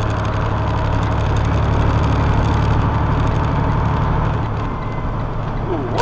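Vehicle engine and road noise heard inside the cab while driving at night: a steady low drone with a constant rushing hiss.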